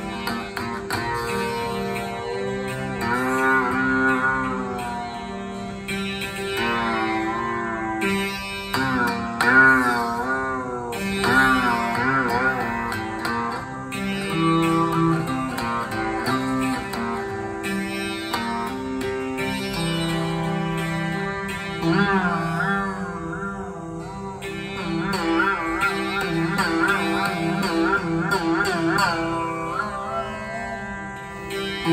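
Rudra veena playing Raag Abhogi in dhrupad style: plucked notes drawn into long, wavering pitch slides over a steady tanpura drone. Near the end the playing turns to quicker repeated strokes.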